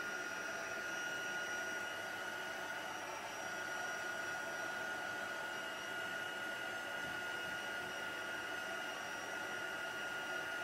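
Craft heat tool (embossing heat gun) running steadily, its fan blowing hot air in an even rush with a steady high whine, drying wet watercolour on paper.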